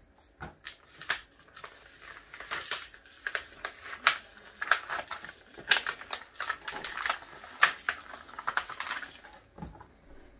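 Cut heat-transfer vinyl being weeded: the unwanted vinyl is peeled back off its backing sheet, giving a run of irregular crackles and ticks.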